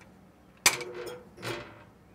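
Paddle switch of a 13-amp induction-motor table saw clicks on. The motor hums for about half a second and spins only a little before winding down: the 1800-watt Xantrex SW2000 inverter cannot supply the motor's inrush current and shuts off with an error.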